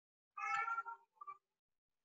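A cat meowing faintly: one call of about half a second, then a brief second one just after.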